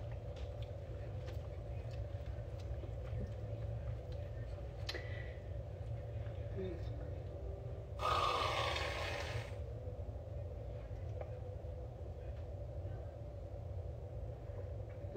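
Aerosol can of Whip Shots vodka-infused whipped cream spraying into a mouth: one hiss about eight seconds in, lasting about a second and a half.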